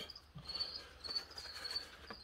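A cricket chirping faintly in short, high pulses repeated at a steady quick rate, with a few faint taps.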